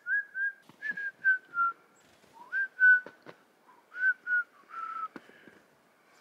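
A person whistling short clear notes in groups of two and three, several falling slightly in pitch, in imitation of a chickadee's song to call the birds in to a hand of seed. A few faint sharp clicks come between the phrases.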